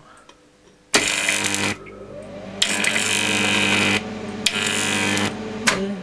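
High-voltage arc drawn from a neon sign transformer (8 kV, 375 mA) at half output: it strikes suddenly about a second in as a loud mains buzz with a hiss. It breaks and restrikes, sounding in three spells with quieter gaps, and ends with a sharp click near the end.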